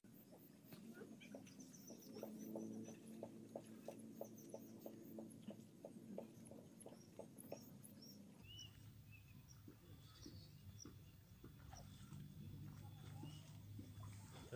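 Near silence: quiet outdoor ambience with faint high chirps, and a faint run of rapid ticks, about three or four a second, that stops about eight seconds in.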